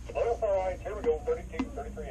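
Brief speech coming through a two-way radio, the voice thin and narrow.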